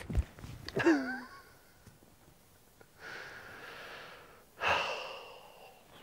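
A four-wood strikes a golf ball with one sharp click at the very start; the shot is struck heavy, catching the ground first. About a second later comes a short groan falling in pitch, then breathy sighs.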